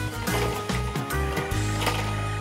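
Background music with a rhythmic riff that settles into a long held chord near the end.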